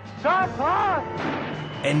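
Film soundtrack: two rising-and-falling pitched wails over a low steady drone, then a noisy rush with a deep boom-like rumble.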